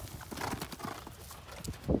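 Hoofbeats of a cantering horse, landing and striding away from a jump, with louder thuds near the end.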